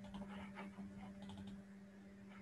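Faint typing on a computer keyboard: a string of irregular key clicks over a steady low hum.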